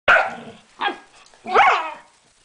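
Dogs squabbling face to face: three sharp barks, the last one longer and sliding up and then down in pitch.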